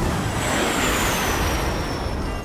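Cartoon jet airliner flying past: a steady engine roar with a high whine that slowly falls in pitch as it goes by.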